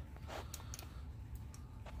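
Faint handling noise: a few light, short clicks and ticks over a low steady hum.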